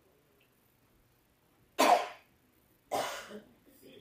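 A person coughing twice, about a second apart, the first cough the louder, with a faint throat-clearing sound near the end.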